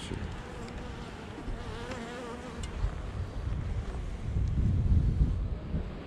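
Honeybees buzzing around an open hive, with one bee's wavering hum standing out close by in the first half, over a low rumble of wind on the microphone that swells toward the end.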